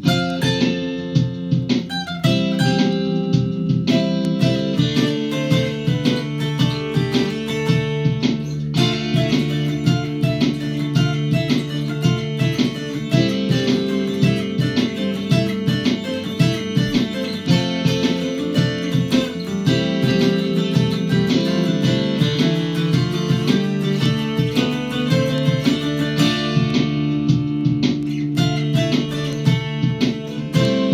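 Mountain dulcimer picked in a quick, steady run of notes over sustained, layered dulcimer parts played back from a looper pedal, with the arrangement starting to build from the top.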